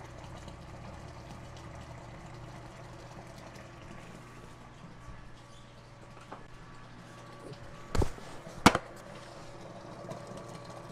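Faint steady low hum, with two sharp knocks close together near the end as a plastic bucket of grain is picked up and handled.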